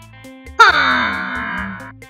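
A cartoon old man's voice lets out a sudden loud scream about half a second in, falling in pitch over a little more than a second. Light plucked-string background music plays underneath.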